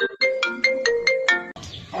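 Mobile phone ringing with a melodic ringtone: a quick run of short notes that stops about one and a half seconds in as the call is answered and a voice begins.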